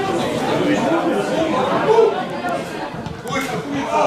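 Indistinct chatter of several spectators talking at once, with no single voice standing out.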